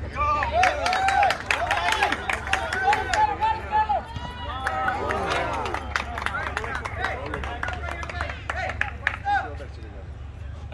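Several voices shouting and calling out across a soccer field, busiest in the first few seconds, with many short sharp clicks and knocks mixed in over a steady low rumble.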